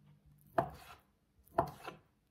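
Kitchen knife cutting down through a block of tofu and striking a plastic cutting board, two cuts about a second apart.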